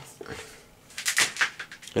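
Mains plug pulled from a wall socket and its cable handled: a faint click at the start, then a few short, sharp clicks and rustles about a second in.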